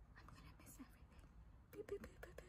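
Near silence: a woman's faint whispering, with a few faint clicks near the end.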